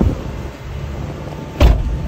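Car engine idling with the air conditioning running, heard from inside the cabin. There is a knock at the start and a sharp, louder thump about a second and a half in.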